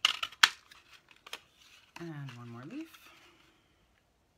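Craft paper punch clicking sharply as it cuts through cardstock, with paper crinkling, in the first half-second, then a few lighter ticks. About two seconds in comes a brief voiced hum whose pitch dips and rises again.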